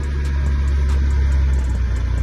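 Ford truck's engine running under way, heard inside the cab as a steady low drone; its note shifts near the end.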